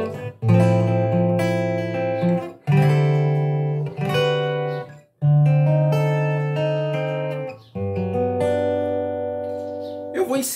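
Acoustic guitar playing four chords, each struck and left to ring for about two and a half seconds, with a brief silence just before the third.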